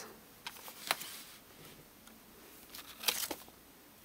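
Hands handling an open Blu-ray steelbook case: faint rustles with a few light clicks, one about a second in and a short cluster a little after three seconds.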